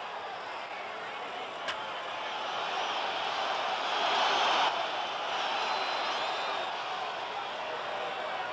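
Ballpark crowd noise that swells into a cheer during the play and drops off suddenly a little after four and a half seconds in, with one sharp crack at just under two seconds.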